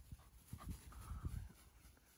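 A Pembroke Welsh corgi panting faintly close by, with a few soft low thumps about halfway through.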